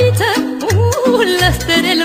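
Romanian folk music instrumental break: a heavily ornamented lead melody with wide vibrato over an accompaniment of bass notes alternating with chords.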